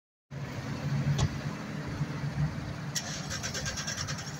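Car engine running close by amid road traffic, a steady low hum, with a single sharp click about a second in.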